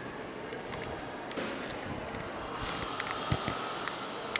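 Handling noise from a camera being moved about: rubbing, scattered clicks and a dull knock about three seconds in, over a steady background hum.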